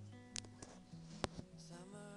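Soft background music with guitar, under a few light, sharp knocks of a serving utensil against a metal cooking pot; the loudest knock comes a little past halfway.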